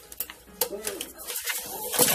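A few light clicks as a plastic zip tie is pushed through a galvanized tin bucket and chicken wire, followed by a soft, low, hum-like sound.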